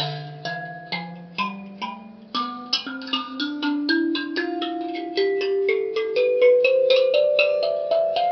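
Njari mbira, a Shona thumb piano, plucked one metal key after another up its scale. Each note rings on as the pitch climbs step by step, slowly at first, then with the notes coming quicker in the second half.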